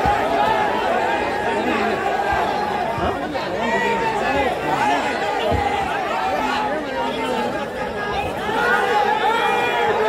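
A large crowd of men's voices talking over one another, loud and unbroken, with no single voice standing out.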